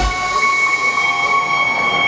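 Live electronic breakbeat music in a breakdown: the bass and beat drop out at the start, leaving a held high synthesizer note over a hiss.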